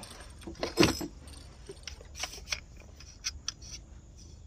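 Handling noises in a small fishing boat: a sharp knock about a second in, then a few brief light clicks and rattles.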